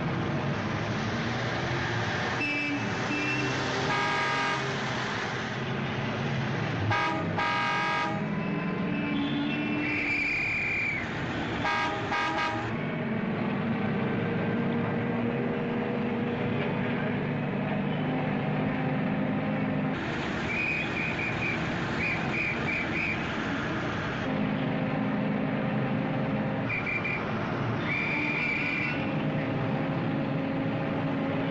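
City street traffic: a steady rumble of car engines with car horns honking many times, some single longer blasts and some quick runs of short toots.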